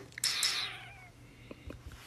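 A short, high cry like a cat's meow, falling in pitch and fading out within the first second, followed by a few faint clicks near the end.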